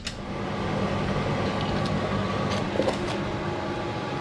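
A small motor running with a steady hum that starts abruptly at the very beginning, with a few faint clicks over it.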